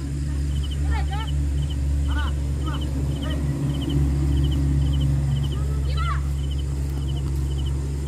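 Players calling out in short shouts across the pitch over a steady low hum. A faint high chirp repeats about twice a second throughout.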